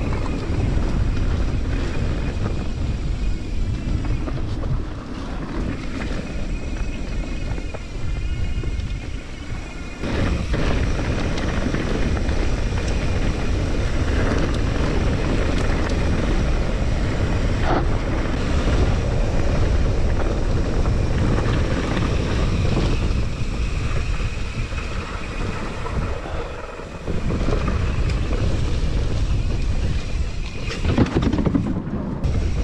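Wind rushing over the microphone of a mountain bike rider's camera, mixed with the rumble of the bike's tyres rolling fast over a gravel track. The rush dips briefly twice.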